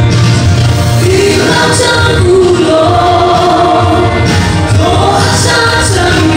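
A woman singing a song into a microphone over accompanying music with a steady bass line, holding a long note about halfway through.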